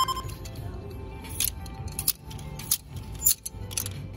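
Clear plastic clothes hangers clacking against each other on a store rack as garments are pushed along, a handful of sharp clicks about every half second, over steady background music.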